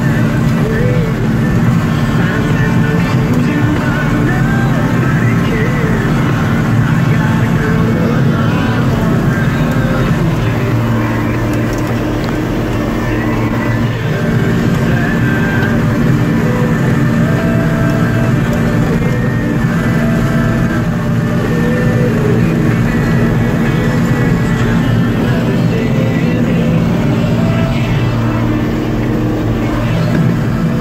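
Tractor engine running steadily under load while pulling a manure spreader that is flinging manure from its beaters, heard from inside the cab. Background music plays over it.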